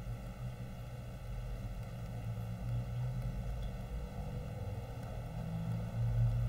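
Steady low hum with a faint hiss underneath: background noise of the recording between sentences, with no speech.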